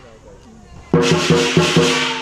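Lion dance percussion: about a second in, the drum strikes four times in quick succession under crashing cymbals, which ring on.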